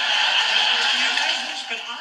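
Audience applause, a steady dense clatter of clapping that fades towards the end, played through a television's speaker.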